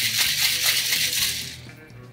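Ice rattling hard inside a cocktail shaker made of a metal tin capped with a glass, shaken fast and stopping about one and a half seconds in.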